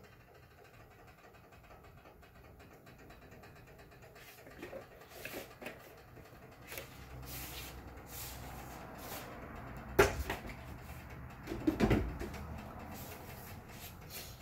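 Kitchen handling noises: scattered small clicks, then a sharp knock about ten seconds in and a short cluster of clunks about two seconds later, over a faint low hum.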